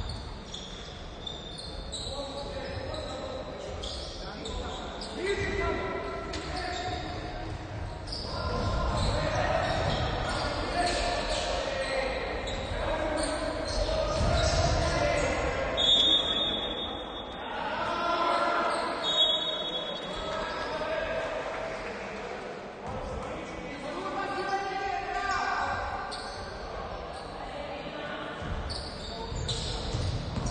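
Basketball game in a large, echoing gym: the ball bouncing on the hardwood floor and players and coaches shouting. Two short, high whistle blasts come about halfway through.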